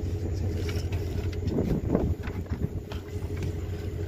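A large eel writhing in a plastic bucket of water as hands work it in, with a wet scuffle about a second and a half in. A steady low motor hum runs underneath.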